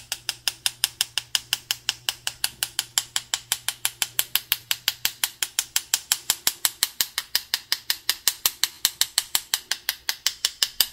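Paintbrush rapped over and over against a second brush's wooden handle, a quick, even run of about six sharp taps a second. Each tap flicks white paint off the bristles to spatter stars onto a painted night sky.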